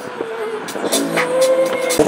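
Drag race car engine running at low revs, with a few sharp cracks.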